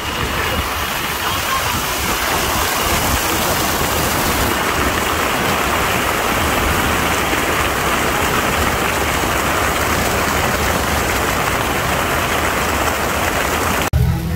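Many arching fountain jets splashing down onto water and wet paving: a steady, dense rushing hiss of falling water.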